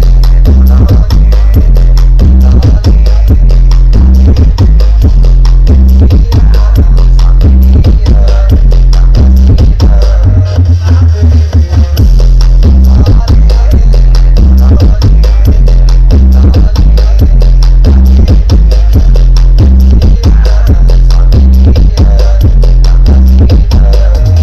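Very loud electronic dance music with a heavy, stepping bass line played through a truck-mounted 'sound horeg' speaker stack, the Balada Dewa Audio rig, at full level. About ten seconds in, the bass holds one low note for a second or two before the stepping line resumes.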